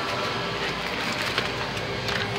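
Steady indoor shop background noise, with a few light clicks and rustles from a handheld phone being moved.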